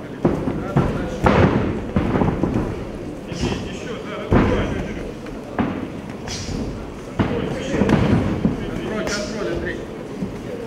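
Bodies and blows thudding on the cage mat as two fighters grapple on the ground, a series of sharp knocks over loud shouting from people around the cage.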